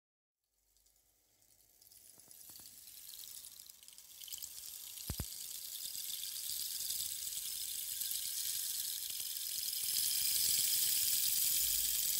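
Rushing water, a hiss mostly in the upper range, fading in from silence and growing steadily louder, with a brief low thump about five seconds in.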